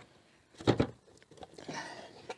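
Faint handling noises from a car's plastic rear light cluster being worked loose, its plastic wing nuts turned by hand, with one brief louder sound about two thirds of a second in.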